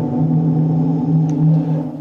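Dark, eerie drone of horror-show background music: a steady deep hum of a few held low tones with no beat.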